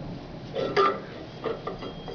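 A few metallic clinks and knocks as a metal disc is handled and fitted onto the stem of an ultrasonic transducer over a stainless steel screener pan. The loudest clink comes a little under a second in and rings briefly; smaller taps follow.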